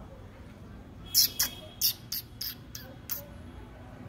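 A person making a quick series of about seven short, high-pitched kissing squeaks, the lip-smacking call used to coax a dog toward food; the first squeak is the loudest.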